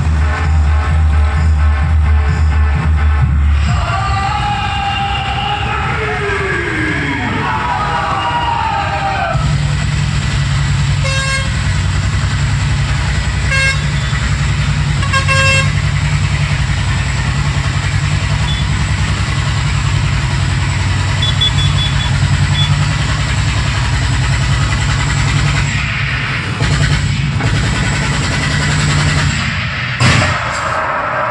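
Dance music with heavy bass booming from a DJ truck's sound system at the start, giving way to busy street noise with a steady low engine hum. A vehicle horn toots briefly three times, about two seconds apart, around the middle.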